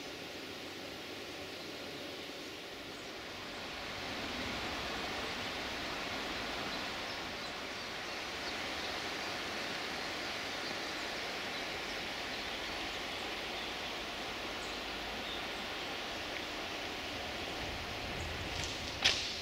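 Steady outdoor rushing noise with no engine or voice in it, growing a little louder about four seconds in.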